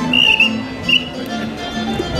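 A whistle blown in two toots, the first held for about half a second and the second short, about a second in, over background music.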